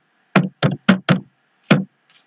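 Five keystrokes on a computer keyboard as a word is typed: sharp single clicks, four in quick succession and a last one after a short pause.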